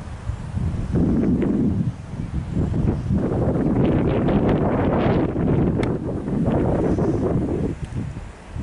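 Wind buffeting the microphone in loud, uneven gusts. It swells about a second in and stops abruptly near the end.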